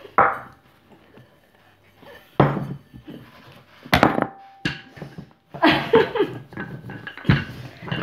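Kitchen utensils knocking on a floured wooden board: a bowl and a wooden rolling pin set down and pressed into pizza dough, four sharp knocks a second or more apart, with softer scraping and handling between.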